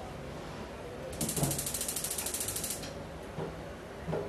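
Electric spark igniter of a gas stove clicking rapidly as a burner knob is turned, a fast, even run of ticks lasting about a second and a half.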